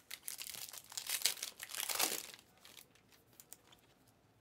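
Trading card pack wrapper being torn open and crinkled by hand, a crackly rustle lasting about two seconds, then dying away to faint handling clicks as the cards come out.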